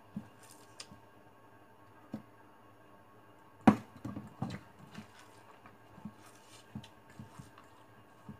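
Hands mixing and squeezing rice in a stainless steel bowl: soft squishing with scattered knocks against the metal bowl. The loudest is a sharp knock about three and a half seconds in, followed by a quick run of smaller ones.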